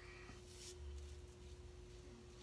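Faint scrape of a Merkur 37C slant-bar safety razor cutting lathered stubble, briefly a little over half a second in, over a steady faint hum; otherwise near silence.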